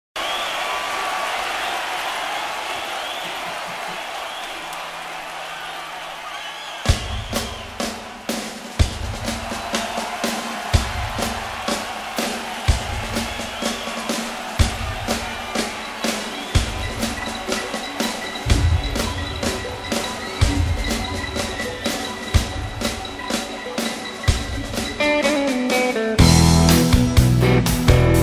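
Opening of a live rock track: about seven seconds of crowd noise fading down, then a steady drum-kit beat with a low bass note about every two seconds. A guitar comes in near the end.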